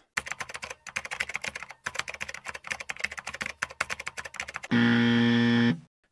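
Fast typing on a computer keyboard, a quick run of key clicks lasting about four and a half seconds. It is followed by a steady buzzing tone of about a second that stops abruptly.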